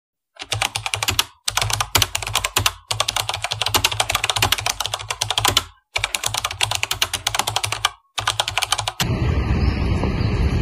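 Fast computer-keyboard typing, used as a sound effect under on-screen text appearing. It comes in five runs with short breaks, and stops about nine seconds in, giving way to steady outdoor background noise.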